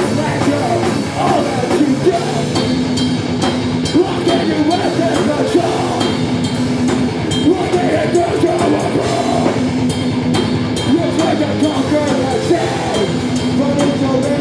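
Live heavy metal band playing: electric guitars and bass over a drum kit, loud and unbroken.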